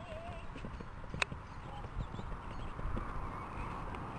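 Horse cantering on grass, its hoofbeats coming as soft, irregular thuds, with one sharper click about a second in.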